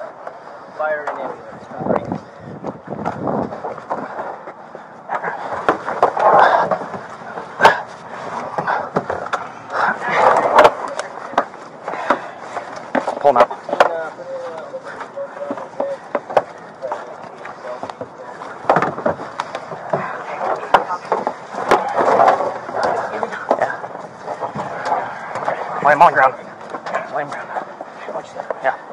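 Scuffling, rubbing and repeated knocks as a man is hauled out of a patrol car's back seat, heard close on a body-worn camera microphone, with voices talking over it at times.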